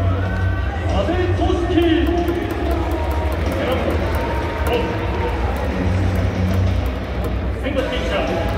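Stadium public-address announcer's voice reading out the starting lineup over background music.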